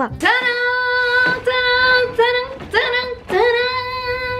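A high voice singing long held 'aah' notes on nearly the same pitch, each about a second long with short breaks between them.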